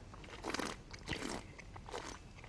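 A person slurping red wine, sucking air through the wine in the mouth to aerate it, in three short hissing slurps.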